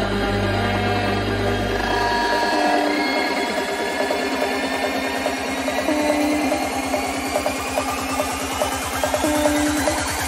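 Psychedelic trance DJ set: the deep bass drops out a couple of seconds in, leaving a fast ticking pulse and short synth notes, and a rising sweep begins near the end as the track builds.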